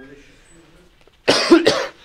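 A person coughing: two sharp coughs in quick succession about a second and a half in.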